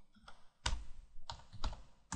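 Computer keyboard keystrokes: about four separate key presses in two seconds, typing out a word, the clearest one about two-thirds of a second in.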